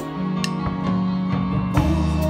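A drum kit played along with a recorded pop song: held backing chords under a few scattered drum and cymbal hits.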